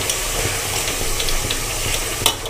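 Mutton pieces coated in ginger-garlic paste sizzling steadily in hot oil in an aluminium pot while being stirred with a steel spatula, with a few faint scrapes.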